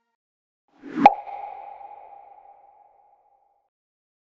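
A single sound-effect hit about a second in: a short swell into a sharp strike that rings on as a steady mid-pitched tone, fading away over about two seconds.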